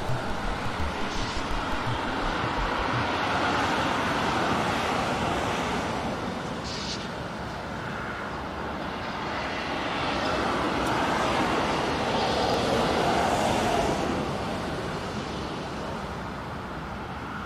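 A steady rushing noise, like wind or distant traffic, that swells and fades slowly. A few low thumps sound in the first second or so.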